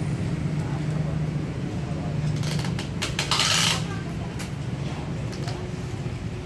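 Steady low hum of background traffic, with a burst of clicks and hissing noise lasting about a second and a half around the middle.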